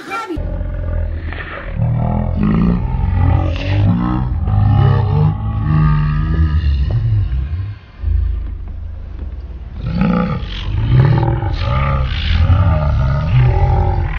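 A loud, deep growling creature voice: a run of rumbling growls and roars with a short break about eight seconds in.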